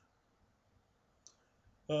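Mostly quiet room with a single short, sharp click a little past halfway, then a man's voice starting just before the end.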